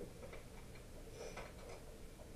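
Faint, irregular light clicks and ticks, a few every second, over quiet room tone.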